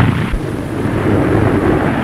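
Boeing 299 bomber prototype's four radial engines at full power on its takeoff run: a loud, steady, noisy rumble.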